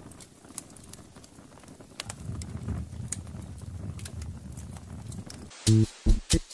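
Quiet ambient sound layer in a song's interlude: scattered irregular clicks and knocks over a low rumble. A few plucked guitar notes come in just before the end.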